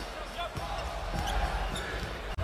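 Basketball being dribbled on a hardwood court during live game play, with the arena's background noise behind it.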